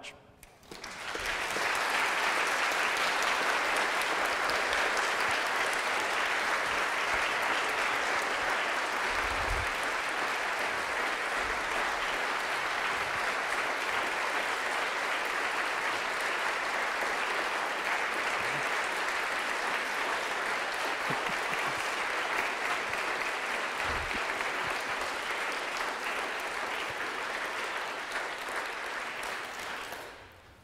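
An audience applauding steadily. The applause swells up within the first second or two and dies away near the end.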